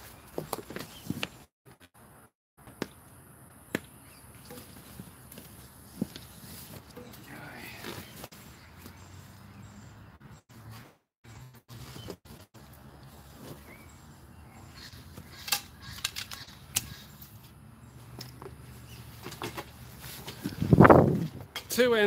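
Footsteps in rubber thongs on grass and arrows being pulled from a target boss and handled, heard as scattered light clicks and knocks. A louder burst of handling noise comes near the end.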